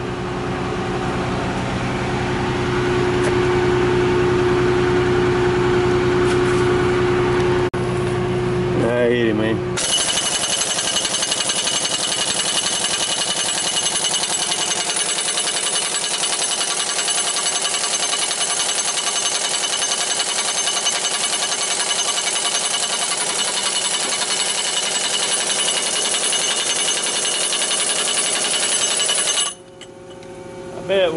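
An engine runs steadily for about the first ten seconds. Then a large impact wrench hammers continuously for about twenty seconds on a big socket over the 4 1/8-inch piston nut of a Tigercat L830C hydraulic cylinder, working the nut loose, and stops suddenly near the end.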